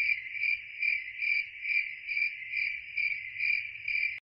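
Cricket chirping sound effect, an even pulsing chirp about two and a half times a second, used as the 'crickets' gag for an awkward silence.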